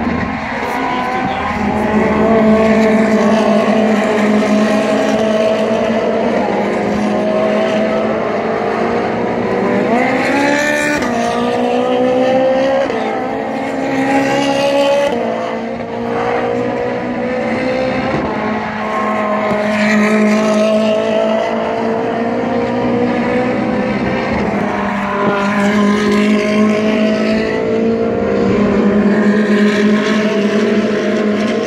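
Race car engines running at speed, their pitch rising and falling again and again as cars go by, over a steady drone.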